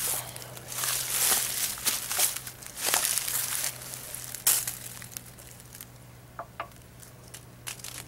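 Crunching and rustling in dry leaves and undergrowth, loud and irregular for about the first four and a half seconds, then quieter with a few light clicks.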